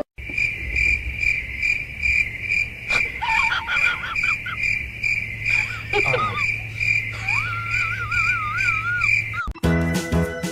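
Dog whining in a wavering pitch that rises and falls, over a steady high chirping tone pulsing about twice a second and a low hum; the whine is longest near the end.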